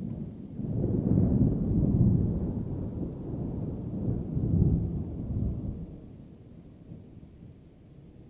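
Rolling thunder, a deep rumble that swells over the first two seconds, surges again about four to five seconds in, then fades away.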